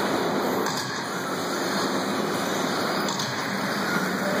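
Steady, even rushing noise of electric 1/10-scale 2WD racing buggies running on an indoor dirt track, their motors and tyres on the clay blending with the hall's background noise.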